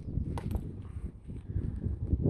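Low rumble of wind buffeting the microphone outdoors, with a light click about half a second in.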